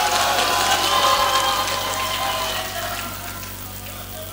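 Audience applause mixed with many voices calling out. It swells at once and dies away over about three seconds.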